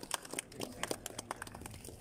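Scattered applause from a small seated audience: a few people clapping unevenly, with individual claps heard separately rather than as a dense roar.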